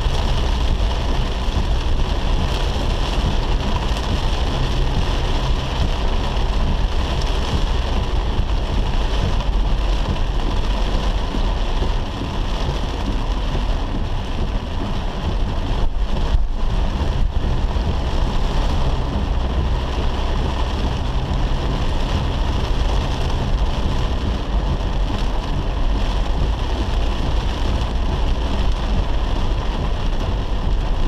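Heavy rain falling on a car's roof and windscreen, heard from inside the cabin, over the steady low rumble of the engine and tyres on a wet road.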